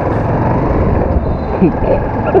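Motorcycle engine running as the bike pulls away and gathers speed, with heavy wind rush on the camera microphone.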